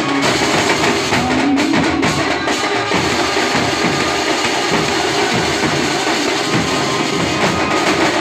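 Maharashtrian benjo band playing loud, steady street music: a melody line over a driving drum beat with hand cymbals, a short held melodic phrase standing out in the first two seconds.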